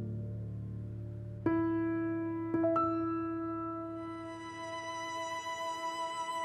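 Soft, slow background score on piano: a few sustained notes struck about a second and a half in and again near three seconds, with a high violin line coming in during the second half.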